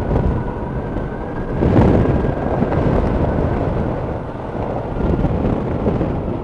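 Motorized hang-glider trike in flight on approach: a loud rush of wind buffeting the microphone over the steady hum of its engine, with a stronger gust about two seconds in.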